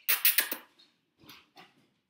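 A pet dog making sounds as it comes when called: a quick run of sharp, noisy strokes in the first half second, then two fainter ones.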